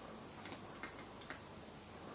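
A cat chewing dry kibble: three short, faint crunches at uneven spacing.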